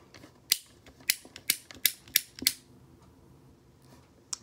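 Pull-and-release piece of a plastic fidget pad being worked by hand: a quick, uneven run of about ten sharp clicks that stops about two and a half seconds in.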